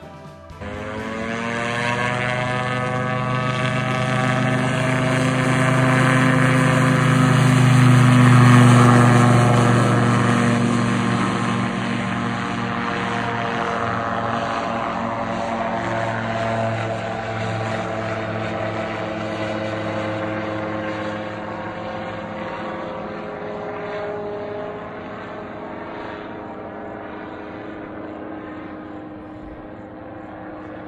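A weight-shift microlight trike's engine and propeller droning as it flies past. The sound swells to its loudest about eight or nine seconds in, then fades steadily as the aircraft flies away.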